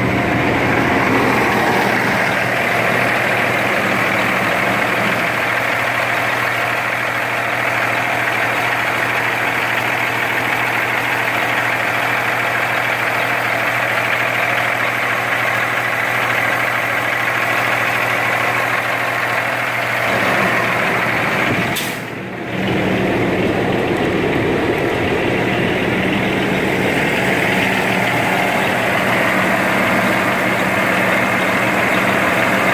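A Cummins ISX inline-six diesel in a Kenworth T600 idling steadily, heard close to the open engine bay with the radiator fan turning. The sound drops briefly for a moment about two-thirds of the way through.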